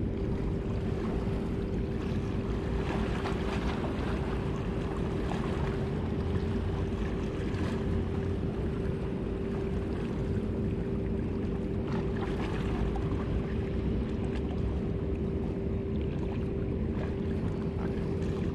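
Wind rumbling on the microphone, with a steady low hum held on one pitch underneath it.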